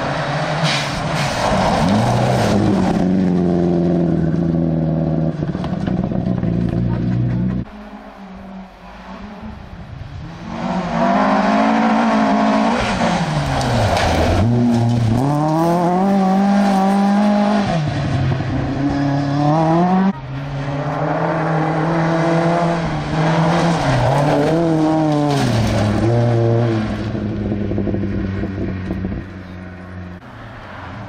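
Rally cars driven hard on a gravel stage, one after another. A Subaru Impreza's engine is held at high revs for the first several seconds. After a short lull about eight seconds in, another car revs hard, its pitch falling and climbing again with each gear change, and a third car does the same from about twenty seconds in.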